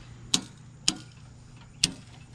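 Circuit breakers in a temporary power pole's panel being flipped by hand: three sharp clicks.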